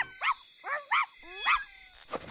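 Cartoon pet characters, a puppy and a kitten, giving four short yips, each rising and falling in pitch, about half a second apart.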